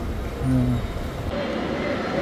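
Low, steady rumble of street traffic, with a short steady hum about half a second in.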